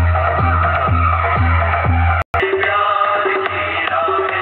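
Loud electronic dance music with a heavy bass kick about twice a second, blasting from a cart-mounted stack of horn loudspeakers. It cuts out suddenly a little past halfway, then the music returns with a different, lighter beat.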